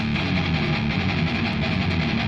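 Electric guitar, an Explorer-style solid-body, played hard: a loud, fast riff picked on the low strings.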